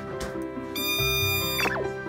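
Plastic toy horn blown by a baby: a high, reedy tone held for just under a second that ends in a quick falling glide, over background music.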